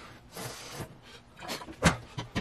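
Soft rustling of a sweet potato wrapped in wet paper towel being handled, then two sharp clicks near the end, the louder one as the over-the-range microwave's door is pulled open.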